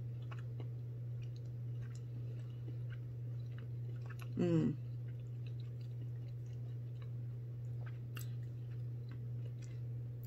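A person chewing a soft-baked cookie with the mouth closed, with faint scattered mouth clicks and a short hummed "mm" about four seconds in. A steady low hum runs underneath.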